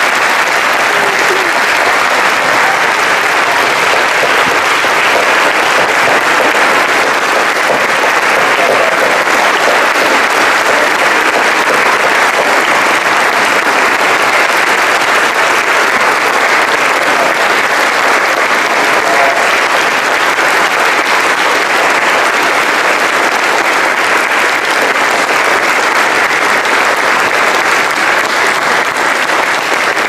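A large audience applauding, steady and unbroken throughout: a long ovation.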